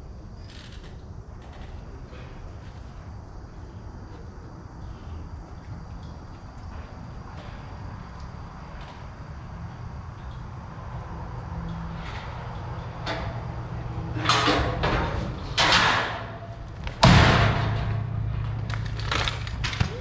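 Steel rodeo chute and gate banging and rattling: a low steady background at first, then several loud clangs over the last six seconds, the loudest a sharp slam as the chute gate is thrown open to release a calf.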